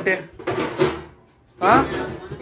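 Kitchen cupboard being opened and handled, short clattering in the first second, followed by a brief voice near the end.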